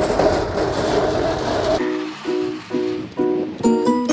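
Light plucked-string background music with a bouncy, repeating pattern of short notes, starting about two seconds in after a brief wash of noise.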